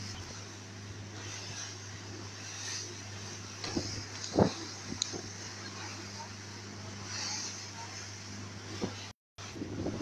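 Motorboat engine running steadily at speed, a low drone under the rush of wind and water, with a few sharp thumps about four seconds in. The sound drops out for a moment near the end.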